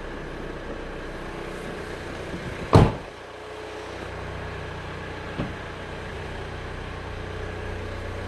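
2014 Hyundai Santa Fe's car door shutting with one loud thump about three seconds in, then a small click a couple of seconds later, over a steady low hum.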